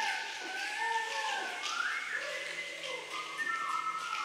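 Mixed choir whistling, several overlapping tones sliding up and down in pitch, with a few faint clicks over them.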